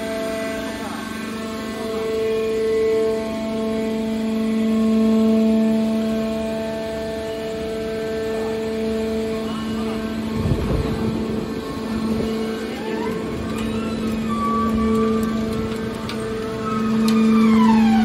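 Hydraulic power unit of a large scrap metal baler running with a steady hum. A short rushing noise comes about ten seconds in, and a tone glides up and down over the last few seconds.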